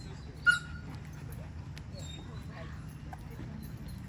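A German Shepherd gives a single sharp, high yip about half a second in, over a steady low background rumble.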